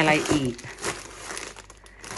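Plastic and paper produce packaging crinkling and rustling in irregular bursts as a bagged bunch of leafy greens is handled and lifted out of the box.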